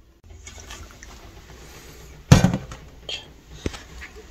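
Soy sauce being poured over raw chicken pieces in a stainless-steel bowl: a steady faint pouring hiss, then a single loud knock a little after two seconds in, followed by a few light clicks.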